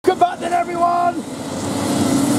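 Go-kart engines running on the track, their note falling about a second in.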